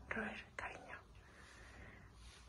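Soft, half-whispered speech: two short utterances in the first second, then only faint background hiss.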